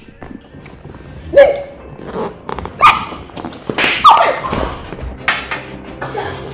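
A woman's short, sharp cries of protest, about three of them a second or so apart, each falling in pitch, with knocks and scuffling as she fights off a man's advances.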